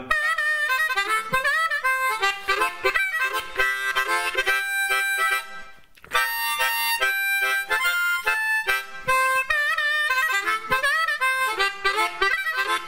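Blues harmonica solo played between sung verses, with bent notes and a brief break a little before the middle.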